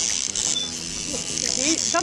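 Faint voices of people talking over a steady high hiss. The talk comes in about a second in.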